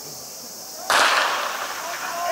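A starter's pistol fires once, about a second in, to start the race: a single sharp crack that rings on briefly across the stadium.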